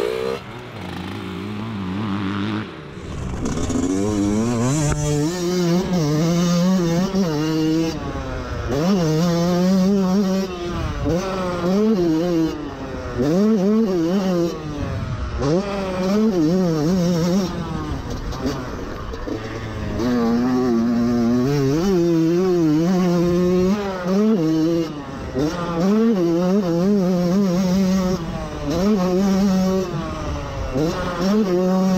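125 cc two-stroke motocross bike pulling away, then ridden hard around the track. The engine's pitch climbs and drops over and over as it revs out, shifts and backs off for corners.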